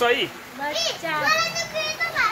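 Children's high-pitched voices shouting and squealing, with pitches that swoop up and down, starting about half a second in.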